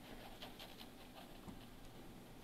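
Faint scratching of a pen drawing on paper: a few short, soft strokes in a quiet pause between piano chords.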